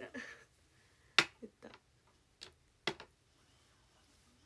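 A handful of sharp small clicks and taps from hands handling a small object. The first, about a second in, is the loudest, with several lighter ticks over the next two seconds.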